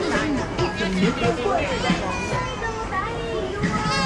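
Market crowd chatter: many voices talking over one another, with music playing in the background.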